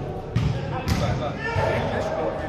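A football being kicked on indoor artificial turf: two sharp thuds about half a second apart, ringing in a large hall, over indistinct shouts from the players.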